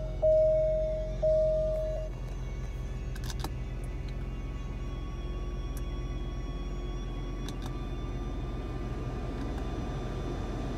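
A car's electronic warning chime sounds as two long, steady beeps over the first two seconds, over the low, steady hum of the 2019 Alfa Romeo Giulia Ti's freshly started engine idling, heard from inside the cabin. A couple of light clicks come about three seconds in.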